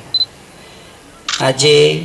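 A man speaking in Gujarati into a microphone: a pause, then he resumes about halfway through. A single short high beep sounds just after the pause begins.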